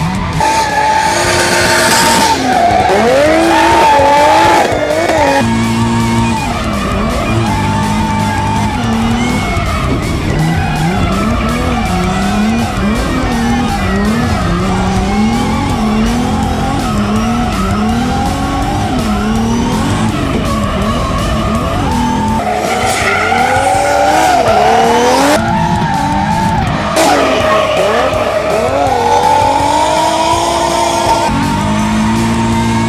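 Drift car engine revving up and down over and over as the car slides, with tyres squealing, under background music.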